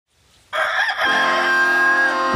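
A rooster crowing: one long crow that starts about half a second in and is drawn out to the end.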